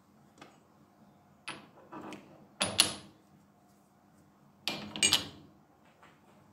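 Steel lathe parts knocking and clinking together as a round steel locating disc is set into the bore of a top-slide mount on the cross slide. A few sharp metal clinks with a short ring, the loudest just under three seconds in, and another cluster around five seconds.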